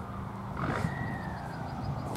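Outdoor background: a steady low hum with a faint drawn-out whistling tone that rises a little and then slowly falls, and a brief rustle about two-thirds of a second in.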